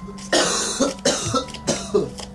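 A person coughing several times in quick succession.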